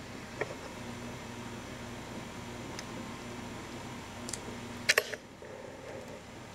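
Room tone with a steady low hum and a few short faint clicks, the loudest about five seconds in.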